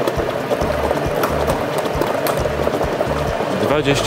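Lottery draw machine running: many plastic balls clattering against each other and the clear drum in a steady rattle, over a low hum from the machine.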